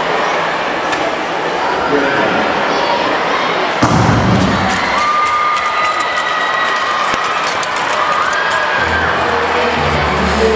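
Arena crowd noise around a short-track speed skating start: a sudden sharp bang about four seconds in, the starter's gun sending the skaters off, then the crowd cheering and clapping, with a couple of held horn-like tones over it.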